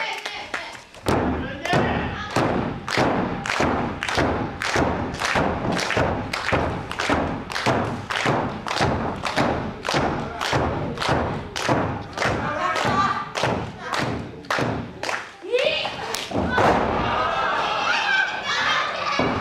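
Steady rhythmic thudding, about three beats a second, which stops about fifteen seconds in. Voices shout at the start and near the end.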